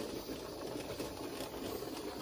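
Steady, fairly quiet background hiss with no distinct clicks or knocks.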